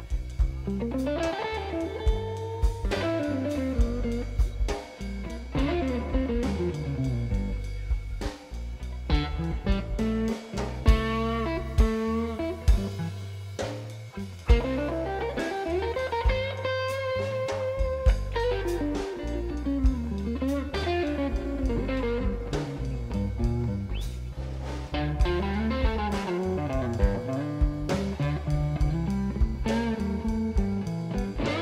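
Blues band playing an instrumental break: a lead electric guitar solo full of string bends and slides over drums and a second guitar.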